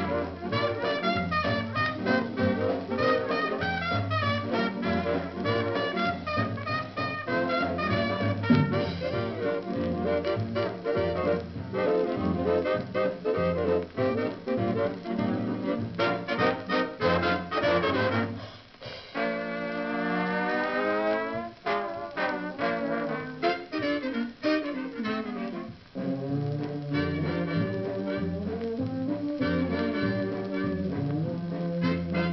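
A 1930s swing dance band plays an instrumental passage led by brass, heard from a shellac 78 rpm record. About two-thirds of the way through, the trombones play a long upward slide, followed by downward slides.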